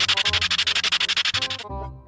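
Background music overlaid with a loud, rapid buzzing or rattling sound effect, more than ten pulses a second, that cuts off about one and a half seconds in, leaving the music.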